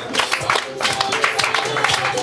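Music.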